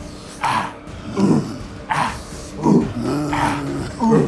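A man's voice making animal-like grunts that fall in pitch, alternating with sharp breathy huffs, roughly one sound every three-quarters of a second, with one longer held grunt near the end.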